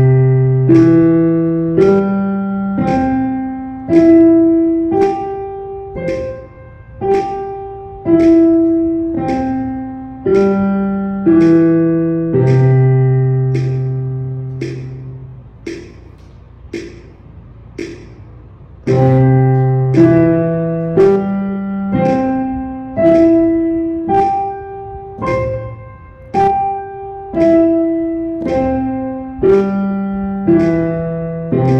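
Piano playing a C major arpeggio over two octaves, up and back down, one note to each metronome click at a slow tempo of 50. First the left hand plays alone, ending on a long-held low C. After a pause of about three seconds, both hands play the arpeggio together.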